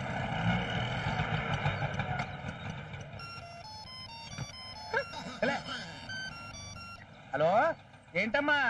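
Street traffic noise, then a mobile phone's electronic ringtone playing a beeping melody for a few seconds. Short vocal exclamations near the end.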